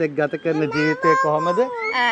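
Talking voices, with a high, drawn-out, wavering meow-like call over them about a second in.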